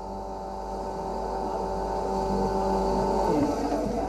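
Milcent domestic atta chakki (electric household flour mill) running and grinding wheat into flour: a steady motor hum and whine over the rush of the grinding chamber, growing gradually louder, its tone shifting slightly near the end.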